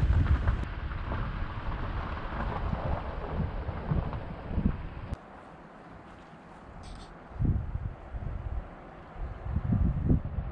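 Wind buffeting the microphone outdoors: a continuous low rumble that drops off suddenly about halfway through, followed by a quieter stretch broken by two short low gusts.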